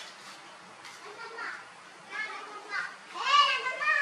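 Baby macaques squealing: a run of short, high-pitched calls that grow louder, with the longest and loudest near the end.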